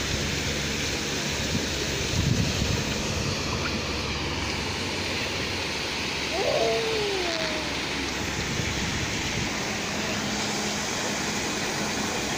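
Steady rushing of water from a splash-pad play structure's sprays and tipping features, with faint children's shouts about six and a half seconds in.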